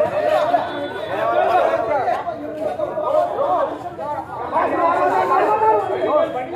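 Several men talking at once, overlapping voices in a street conversation.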